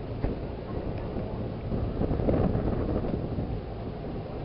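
Wind buffeting the camera microphone: a steady low rumble that grows louder and rougher about two seconds in.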